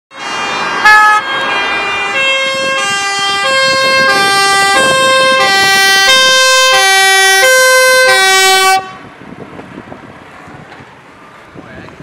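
Dutch fire-service hazmat advisor van's two-tone siren on an urgent run, alternating steadily between a low and a high note. There is a brief louder blast about a second in. The siren cuts off suddenly about nine seconds in, leaving fainter road and wind noise.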